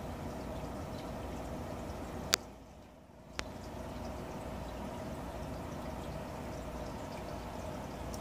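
Steady trickle and hum of running aquarium water, likely the tank's filter. A click a little over two seconds in is followed by a dip of about a second, then another click, and the running water returns.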